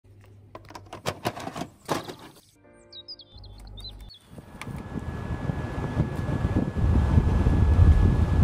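A run of sharp clicks and rustles from handling small objects and paper, then a few quick high chirps. From about halfway a steady noise with a low rumble swells, growing louder toward the end, like wind on the microphone outdoors.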